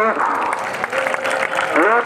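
Crowd clapping, with a voice calling out loudly at the start and again near the end.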